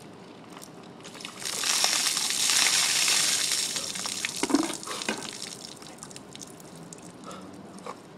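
A bucket of ice water poured over a person, gushing for about two seconds starting around a second and a half in, then dripping and splashing onto the pavement.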